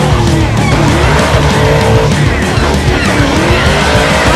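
Car doing a burnout: engine revving and tyres squealing in wavering pitches, mixed with a loud rock song.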